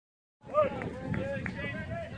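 People's voices talking, words unclear, starting about half a second in after a silent start.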